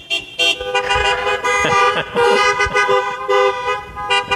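Several car horns honking at once as a greeting: a few short toots, then long overlapping held blasts at different pitches.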